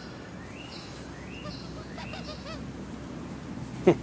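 Faint bird calls in the background: a few short rising-and-falling chirps over a low steady outdoor hum, with a man's voice cutting in briefly near the end.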